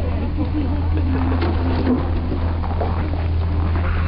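A steady low hum throughout, with a person's voice faintly over it.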